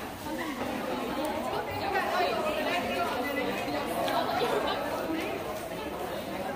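Many people talking at once: a steady babble of overlapping voices, with no single speaker standing out.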